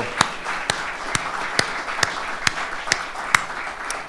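A room of people applauding, with one person's louder claps close to the microphone, evenly spaced about twice a second throughout.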